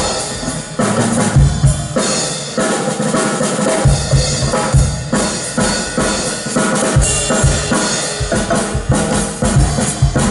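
Drum kit played live in a band number, with bass drum and snare strikes to the fore.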